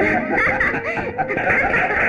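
A woman laughing, a continuous run of high, wavering laughs.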